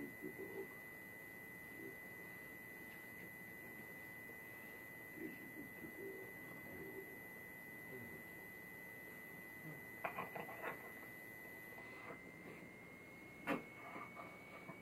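Faint sounds of two dogs shifting about on a bed over a steady high-pitched tone, with soft low murmurs, a short run of clicks about ten seconds in and one sharper click near the end.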